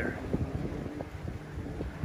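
Wind buffeting the microphone over the steady low running of a pontoon boat's outboard motor.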